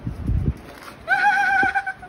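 Beagle puppy giving one high-pitched, wavering whine lasting about a second, starting about a second in, after a few soft low thumps.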